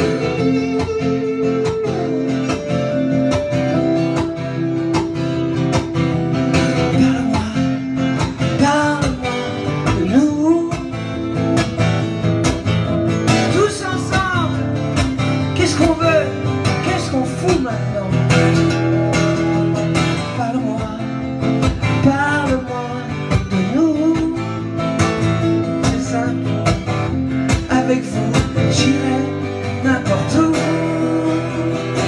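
Strummed acoustic guitar playing steadily, with a man's voice singing over it in stretches.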